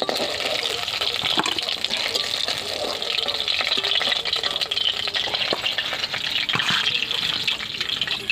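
Hot oil sizzling in a kadai as fried tilapia pieces are lifted out with a flat metal spatula, with scattered light scrapes and taps of the spatula against the pan over a steady hiss.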